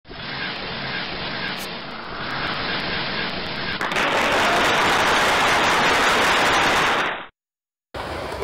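Rushing noise sound effect for an animated intro, steady at first and louder from about four seconds in, cutting off suddenly about a second before the end.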